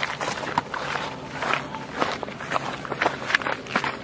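Footsteps through grass and undergrowth, with the rustle of vegetation, about two irregular steps a second.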